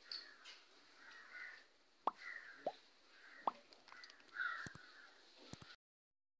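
Faint background with a few distant bird caws and several short, falling plip-like clicks. The sound drops out completely for a moment near the end.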